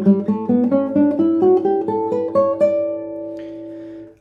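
Nylon-string classical guitar, a 2018 Douglass Scott, played fingerstyle: a quick run of single plucked notes climbing in pitch, then a last note about two-thirds of the way through that is left to ring and fade.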